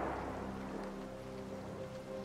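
Steady rain ambience with soft background music: a few sustained notes held under the rain.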